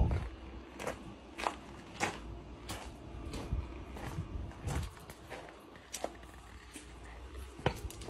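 Footsteps on a gravel driveway: a steady walking pace of about three steps every two seconds, then two more scattered steps near the end.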